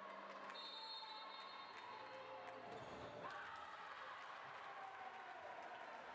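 Faint, echoing sound of an indoor handball game: a ball bouncing on the hardwood court among distant voices and shouts. A faint high steady tone sounds for about a second near the start.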